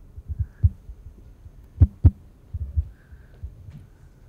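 Microphone handling noise: a series of dull low thumps, with two sharp knocks about a quarter second apart near the middle.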